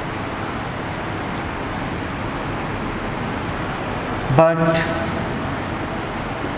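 Steady rushing background noise, with one short spoken word about four seconds in.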